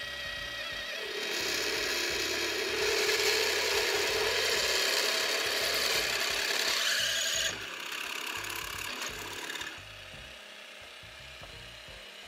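Drill press boring a hole through a thin metal plate with a Gühring stepped-point twist drill bit: a steady grinding, cutting noise from about a second in, dropping about seven and a half seconds in and fading out near ten seconds as the cut ends.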